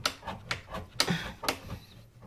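Tight-space pipe cutter being turned around a 22 mm copper pipe, its cutting wheel scoring through the pipe with a sharp click about twice a second.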